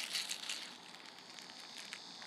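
Faint crinkling of a clear plastic sleeve around a handheld device, soft rustles mostly in the first second.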